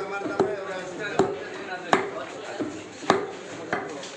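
A butcher's cleaver chopping raw meat on a wooden chopping block: about five sharp chops at irregular intervals, with voices chattering behind.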